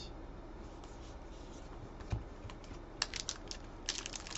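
Trading cards being handled and set down on a tabletop mat: light scattered clicks and taps, a soft thump about two seconds in, and a quick run of sharper clicks near the end.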